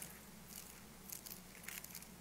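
Faint rustling and crinkling of Bible pages being turned, a few soft crackles over a low steady room hum.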